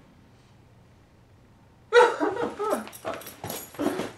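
A man's loud, high-pitched yelping cries start suddenly about two seconds in, after near quiet, and break into quick repeated bursts.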